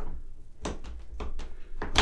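Torque pin of a Real Avid Master Vise being pulled out of the ball head and fitted into the opposite side: a few light metal clicks and knocks as the pin is handled and seated.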